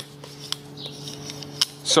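Razor-blade scraper scraping old head-gasket residue off a cylinder head's gasket surface: light scratchy strokes with a few sharp clicks of the blade against the metal.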